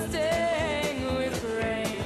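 Band playing a folk song: a wavering lead melody over a steady beat.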